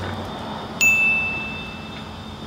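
A single bright, high-pitched chime struck a little under a second in, ringing on and slowly fading: a logo sound effect.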